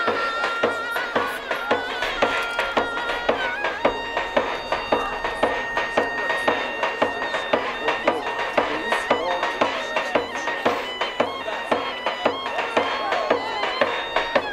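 Davul and zurna playing Turkish folk music: the shrill double-reed zurna holds long notes over a steady beat on the bass drum.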